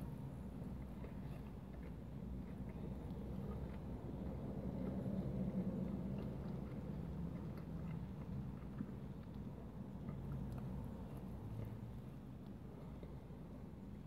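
A man chewing a mouthful of burger, faintly, over a steady low rumble inside a car cabin.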